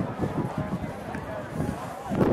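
Indistinct talking from people around the pitch, too faint and jumbled to make out words.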